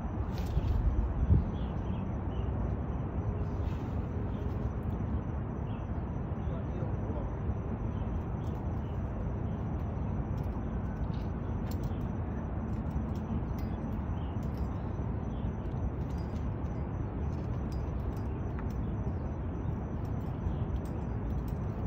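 Steady low rumble of wind on the microphone, with a few faint clicks.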